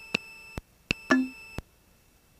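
Aircraft radio and intercom headset feed between ATC calls: a few sharp, irregularly spaced electronic clicks over faint steady tones, with a short low blip about a second in.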